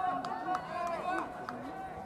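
Several players' voices shouting and calling out at once across a baseball field, overlapping, with one long held call running underneath. There are a few sharp clicks among them.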